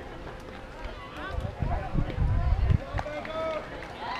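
Several voices of players and spectators calling out across a softball field, overlapping and unintelligible, with a few low rumbles between about one and three seconds in.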